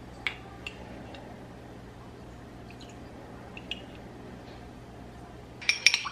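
Quiet kitchen room tone with a steady low hum and a few faint clicks and drips as cold water is spooned into a ceramic ramekin holding an egg yolk. Near the end a metal spoon starts clinking against the ramekin as the yolk and water are stirred.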